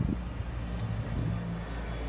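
Low, steady rumble of a motor vehicle running nearby, with a faint engine tone in the second half.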